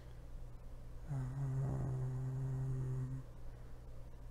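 A man humming a long, steady, low closed-mouth 'mmm' for about two seconds, starting about a second in.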